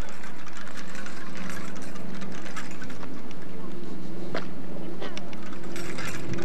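A child's bicycle with training wheels rolling over asphalt, with scattered light clicks and rattles, over a steady low hum and hiss.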